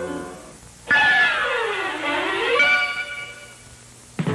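A short electric-guitar sting that enters suddenly about a second in: one held note that slides down in pitch, swings back up, then fades out.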